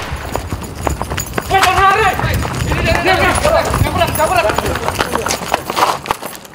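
Men's raised voices shouting over hurried footsteps and the scuffle of a struggle on the ground.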